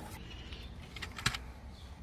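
A few light plastic clicks and taps as a small screw-cover flap in a Hyundai Elantra's door pull-handle recess is worked open by fingertip: one at the start, then a short cluster a little past a second in.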